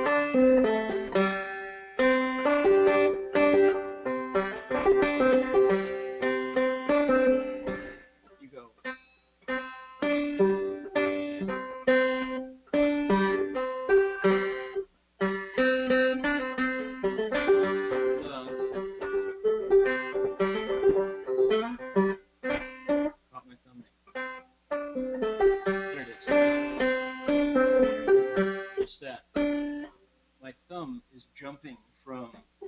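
A century-old banjo played clawhammer style with the drop-thumb technique: quick runs of plucked notes in phrases broken by short pauses and a longer lull about two-thirds through. The phrasing is stop-start, and the player says he still has to warm up. The sound comes over a video-call link.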